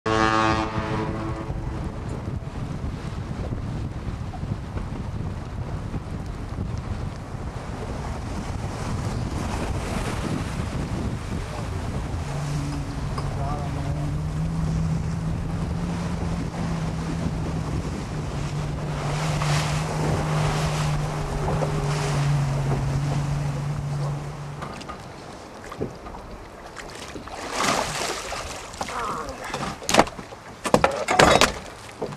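A boat's engine running as the boat crosses rough, choppy water, with heavy wind buffeting the microphone. A steady low engine drone stands out for about twelve seconds in the middle, then the sound drops away near the end.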